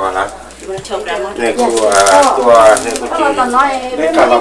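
People talking in a small room: voices only, in a language the transcript does not capture.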